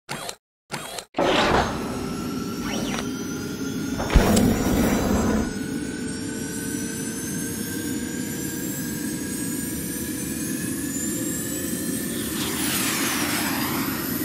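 Cinematic title-intro sound design: a few short blips, then a steady drone whose pitch climbs slowly, with a sharp hit about four seconds in and a sweeping whoosh near the end.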